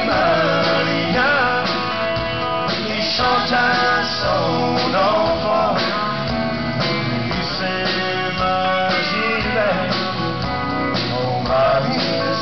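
Live country-style band music: guitar accompaniment under a wavering lead melody line.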